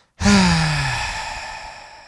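A man's long sigh, voiced at first and falling in pitch, then trailing off into a breathy exhale that fades slowly.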